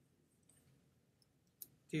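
Quiet room tone with a few faint ticks and one sharp click about one and a half seconds in, the sound of a computer mouse or keyboard being worked while drawing in Photoshop.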